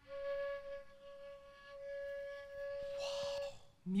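A flute playing one long, steady note that stops about three and a half seconds in, turning breathy just before it ends.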